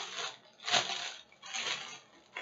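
Packaging rustling in two short bursts as it is handled.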